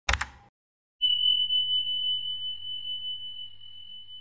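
Subscribe-button sound effect: a short click right at the start, then about a second in a single high bell-like ding that rings on and slowly fades.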